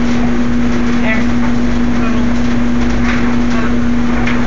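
A steady hum on one constant low tone over an even background noise, with a few brief faint vocal sounds about a second in and near three seconds.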